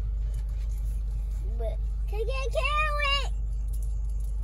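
Steady low rumble of an idling car heard from inside the cabin, with a child's high-pitched wordless call about two and a half seconds in.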